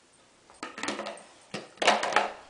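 Stainless steel dog bowls clanking as a dog noses and nudges them: a short cluster of metal knocks about halfway through and another near the end.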